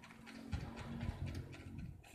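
Light ticks and taps of small plastic dolls and toys being handled and set down on a tabletop, with a faint steady hum beneath.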